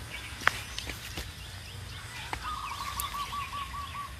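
Faint background birdsong: scattered short chirps, with a rapid pulsing call held at one pitch for about a second past the middle, and a few faint clicks.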